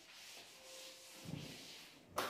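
Faint rubbing of a handheld whiteboard eraser wiping marker writing off a whiteboard, in uneven strokes.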